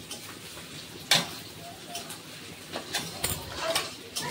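A metal spoon clinking against steel spice tins and the pan as chili powder is tipped onto frying onions: one sharp clink about a second in and a few lighter taps near the end, over a faint steady sizzle of the oil.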